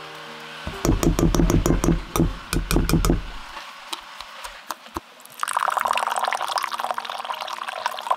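A metal spoon clicking and scraping against a ceramic bowl as it works a chili-garlic paste, then, from about five and a half seconds in, liquid poured into the bowl, stopping suddenly right at the end.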